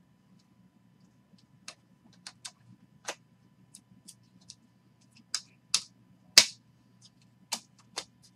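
Trading cards handled by hand: scattered sharp clicks and ticks as the stiff chrome cards are flicked through and one is slid into a plastic card sleeve, the loudest click a little after the middle.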